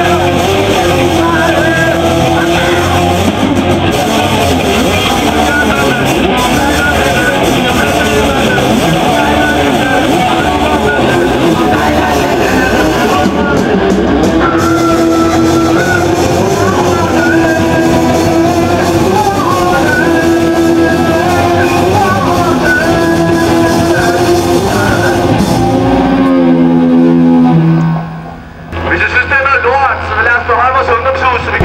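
A punk rock band playing loud, with electric guitar and bass guitar. Near the end the pitch slides downward and the music breaks off about a second before the end, giving way to outdoor noise.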